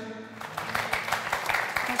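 Studio audience applause, many hands clapping irregularly, starting about half a second in as the song ends.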